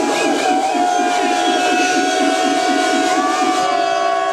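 Electronic dub siren played over a sound system: a long held tone with a fast pulsing warble beneath it.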